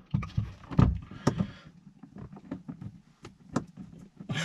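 Screwdriver working at the mounting screw of a car sun visor, with handling of the plastic visor against the headliner: a rustling scrape for the first second and a half, then a few scattered short clicks and knocks.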